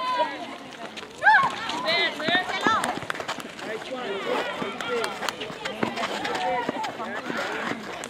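Netball players' high-pitched voices calling and shouting on court, in short bursts throughout, loudest just over a second in, with scattered sharp taps and clicks from play on the hard court.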